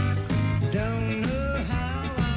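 A male country singer singing a slow song live with band accompaniment, his voice sliding between held notes over sustained chords.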